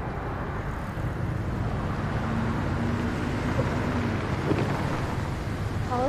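City street ambience: a steady low rumble of road traffic.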